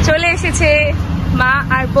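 Talking over a steady low rumble of road traffic.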